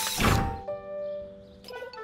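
Cartoon background music with held notes, over a short thud sound effect just after the start. The thud goes with the robot coming up out of the snow.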